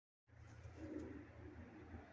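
A bird calling faintly in a few soft, low notes over a steady low hum.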